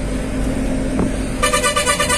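Steady low drone of a truck driving, heard from inside the cab. A vehicle horn sounds in one steady tone from about a second and a half in.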